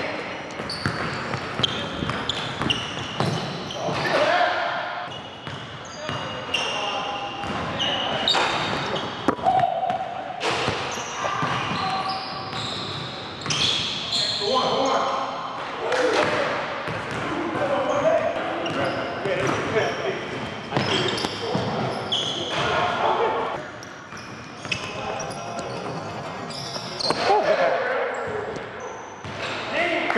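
Basketball bouncing on a hardwood gym floor during a full-court game, mixed with short high squeaks of sneakers and players' shouts, all echoing in a large hall.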